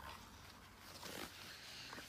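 Near silence, with a faint rustle of a picture book's page being turned about a second in.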